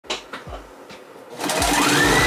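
Juki sewing machine starting up about a second and a half in. Its motor whine rises in pitch as it gets up to speed, then runs on steadily with rapid needle strokes. A few soft knocks come before it.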